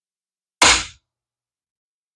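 A single short, sharp knock about half a second in, fading quickly, from the spool and side plate of a baitcasting reel being handled as it is taken apart.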